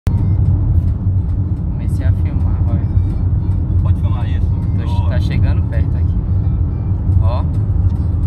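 Steady low rumble of a moving car's engine and tyres on the road, heard from inside the cabin, with faint voices a few times.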